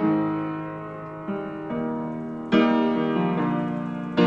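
Soundtrack music: piano chords struck and left to ring, with softer notes just past a second in and a louder chord about two and a half seconds in.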